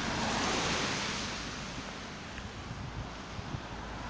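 Car tyres hissing on a wet asphalt road as a car passes close by, the hiss loudest in the first second or so and then easing off into a steadier background of traffic on the wet road.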